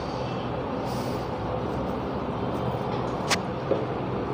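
Steady room background noise with a low hum, and one sharp click about three seconds in.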